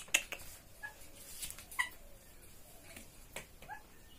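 Indian ringneck parrot giving three short, soft squeaks, with scattered light clicks as it clambers onto a wire cage.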